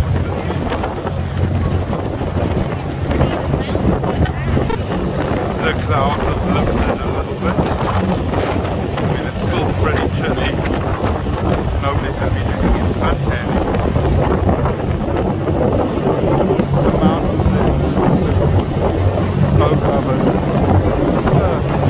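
Wind buffeting the microphone on a moving tour boat, a loud and steady rumble, with the boat's engine humming low underneath.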